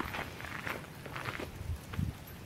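Footsteps walking across the wooden plank deck of a footbridge: a run of short knocks, about two or three a second.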